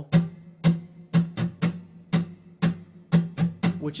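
Acoustic guitar strummed with the fretting hand resting on the strings, giving scratchy, muted strums in a set strumming pattern: five strokes, the last three coming quicker, played twice.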